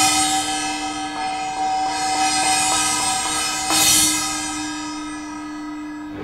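Small hand-held gong struck with a mallet, ringing with a clear, steady pitch. It is struck again a little before four seconds in, then slowly dies away.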